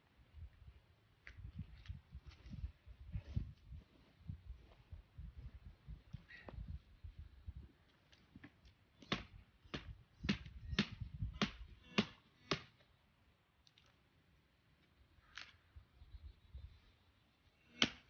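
Wooden stakes being pounded into the ground: a run of about seven sharp knocks, roughly two a second, after scattered lighter knocks.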